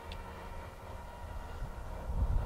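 Faint low background rumble with no distinct event, typical of outdoor handheld recording.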